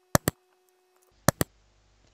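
Two computer-mouse double-clicks about a second apart, each a pair of sharp clicks in quick succession.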